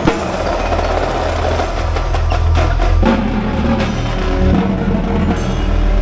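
Indoor percussion ensemble playing, with marching tenor drums (quads) close up among rapid drum strokes. A low sustained bass tone comes in about a second in and runs underneath.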